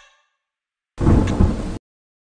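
A short burst of noisy rumble, heaviest in the low end, starting about a second in after a silence and cut off abruptly under a second later.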